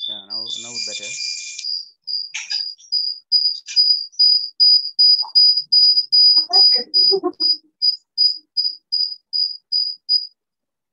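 A cricket chirping in a steady run of short, high, pure-pitched chirps, about three a second, picked up through a call participant's microphone. The chirps swell and then fade, and cut off suddenly at the very end.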